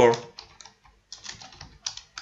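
Computer keyboard typing: a run of quick, irregular keystrokes.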